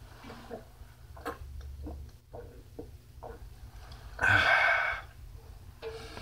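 Small clicks and knocks of glasses handled on a table, then a loud raspy exhale about four seconds in as a man takes a shot of vodka.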